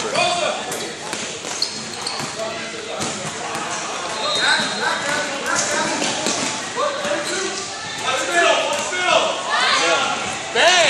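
Basketball game sounds in a large gym: a ball bouncing on the court amid players' and spectators' indistinct voices and shouts, echoing in the hall.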